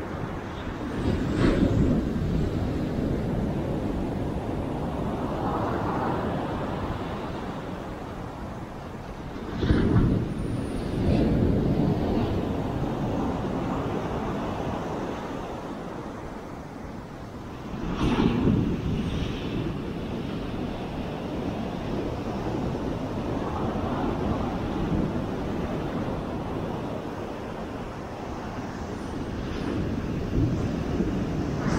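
Ocean surf breaking and washing up a sandy beach, with wind buffeting the microphone. The rushing noise swells louder a few times, at about two seconds, ten seconds and eighteen seconds in.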